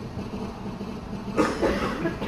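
Steady low hum and rumble of a large hall's room noise through the sound system, with a short voice sound in the last half-second.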